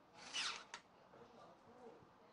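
The toy's small electric gear motor driving its plastic gears in a brief whir lasting about half a second, followed by a sharp click.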